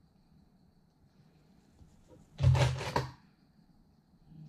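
Hands shifting a hoodie and its zipper on a cutting mat: one short rustling thump about two and a half seconds in, otherwise quiet handling.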